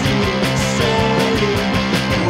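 Post-punk rock band playing an instrumental passage: electric guitar lines over a steady, driving beat, with no vocals yet.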